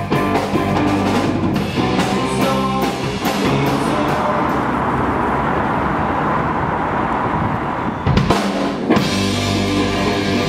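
Rock trio playing: electric guitar, bass guitar and drum kit. A few seconds in the beat drops out into a sustained ringing wash for about four seconds, then drum hits bring the full band back in near the end.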